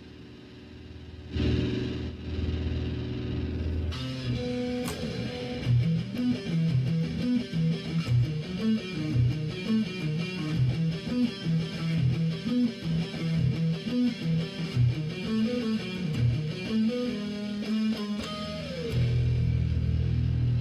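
Electric guitar playing solo. A chord rings from about a second in, then a fast picked riff of single notes weaves up and down, ending near the end with a slide down into a held low chord.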